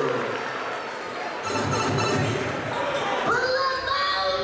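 Basketball game in a gym: a ball bouncing on the hardwood court amid voices and crowd noise.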